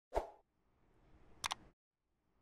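Subscribe-button animation sound effects. A short pop comes right at the start. Then a faint hiss swells and ends in a quick double mouse click about a second and a half in.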